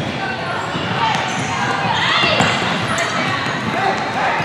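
Futsal being played on a hardwood gym floor: the ball knocking and bouncing on the boards, sneakers squeaking, and voices of players and spectators calling out in the large hall.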